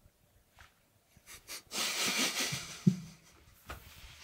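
A man noisily sipping thick coffee fluid gel from a glass: a hissing intake of air lasting about a second, starting a little under two seconds in, followed by a short low hum.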